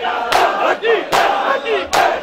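A crowd of shirtless mourners beating their chests in unison in matam: sharp slaps land together about every 0.8 s, three in this stretch, over a mass of male voices shouting and chanting.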